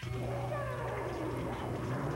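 Comic sound effects: a long falling, wail-like glide over a dense din and a steady low hum.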